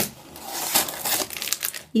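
Clear plastic wrapper on a packet of biscuits crinkling as it is handled, a dense run of crackles that stops just before the end.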